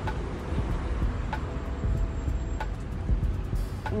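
Street ambience: a steady low traffic rumble with a few light clicks and a faint held tone in the middle.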